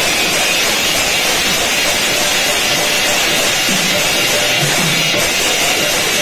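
Large brass hand cymbals clashing continuously together with a two-headed hand drum, the instrumental accompaniment of an Odia pala. A few low drum strokes stand out a little past halfway and near the end.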